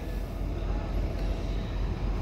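Steady low hum in the cab of a 2023 Freightliner Cascadia semi-truck.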